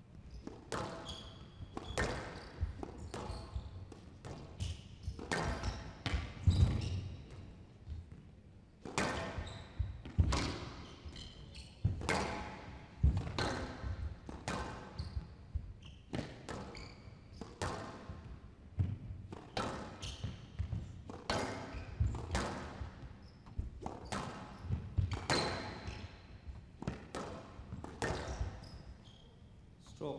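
Squash rally on a glass court: the rubber ball struck by rackets and smacking off the walls in a quick run of sharp hits, one or two a second.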